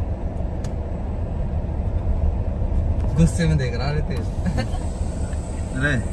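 Car rolling slowly, heard from inside the cabin: a steady low rumble of engine and tyres. A voice calls out briefly about three seconds in.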